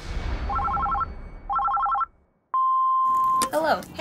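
Telephone ringing twice in short trilling bursts, then a click and a steady beep about a second long, like an answering machine's beep before a recorded message.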